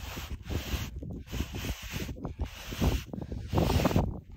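Wooden sandboard dragging slowly through soft dune sand, a rough scraping hiss of sand against the board, with irregular wind buffeting on the microphone. The board is bogging down in the sand instead of gliding.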